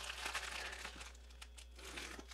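Plastic bubble mailer crinkling and rustling faintly as it is slit open with a utility knife, with small scattered crackles.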